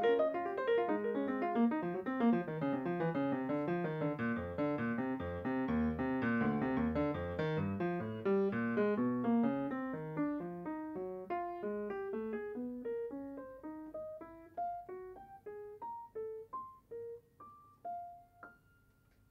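Grand piano playing a jazz passage: a dense falling cascade of notes and chords at first, then a slower line of single notes climbing higher, thinning out and growing quieter toward the end.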